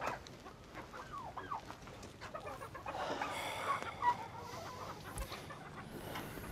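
Chickens clucking: short calls scattered through, busiest and loudest a little past the middle.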